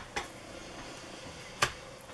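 A single sharp finger snap about one and a half seconds in, after a couple of soft clicks as tarot cards are handled.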